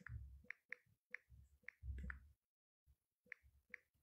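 Faint, irregular clicking, a couple of clicks a second, with soft low thumps in between.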